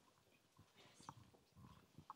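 Near silence: faint room tone with a few soft knocks and rustles, a little stronger about a second in.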